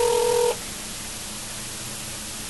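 Telephone ringback tone on an outgoing call: a steady tone that stops about half a second in, leaving a steady hiss on the phone line while the call is being picked up.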